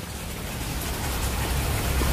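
Steady hiss of outdoor background noise, with no distinct events, slowly getting louder.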